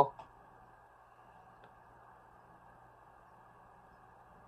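Near silence: faint, steady room hiss, after the tail of a spoken word at the very start.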